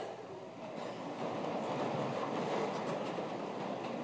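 Steady rustle and shuffle of a congregation settling after the prayer's "Amen".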